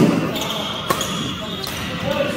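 Badminton racket strikes on a shuttlecock during a rally: two sharp hits about a second apart.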